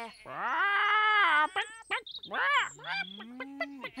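Cartoon hens clucking and squawking in a person's imitation voice: one long rising-and-falling squawk, then a few short clucks, then a slow upward-sliding note near the end.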